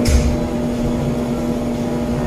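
Steady machine hum with one constant low tone under an even hiss, as from running equipment such as fans, pumps or climate control. A brief low bump comes right at the start.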